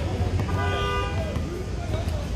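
A car horn sounds once, a steady toot just under a second long starting about half a second in, over the low rumble of street traffic and voices in the background.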